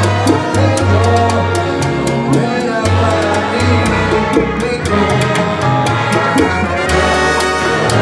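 Live salsa band playing: a trumpet and trombone section over congas, timbales and upright bass, with regular percussion strokes.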